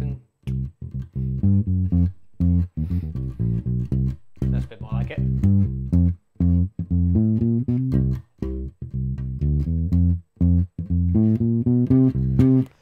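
Electric bass guitar, a Fender Precision-style bass, played fingerstyle through an amp: a rhythmic line of short, separated low notes vamping from the I chord to the IV chord.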